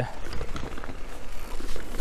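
Electric mountain bike rolling down a dirt trail strewn with dry leaves: an uneven crackling rattle of tyres and bike, with a low rumble underneath.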